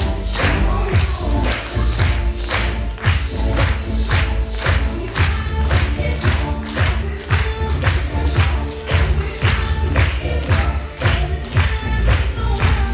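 Recorded pop music with a steady, driving beat of about two hits a second and singing over it.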